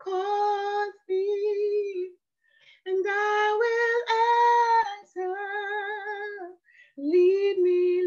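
A woman singing a gospel worship song unaccompanied, in several phrases of long held notes with vibrato, broken by short pauses for breath.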